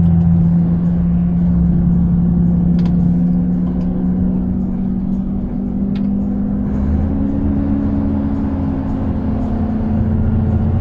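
Cab interior of a Volvo FH 520 truck: its 13-litre six-cylinder diesel drones steadily while the retarder, on stage two, holds the loaded truck back on a long downhill. The pitch rises slightly past the middle and eases back near the end.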